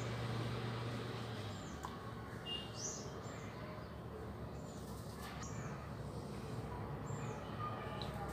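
Small birds chirping in the background: several short, high chirps a second or so apart, over a low steady hum, with a couple of faint knocks midway.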